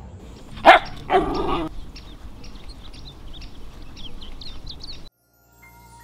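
A dog barking twice in the first two seconds, followed by faint high-pitched chirping. The sound cuts off suddenly about five seconds in.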